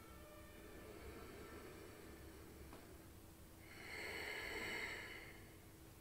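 A woman breathing audibly during a slow belly-breathing exercise: a faint breath early on and one louder, drawn-out breath about four seconds in, lasting a little over a second.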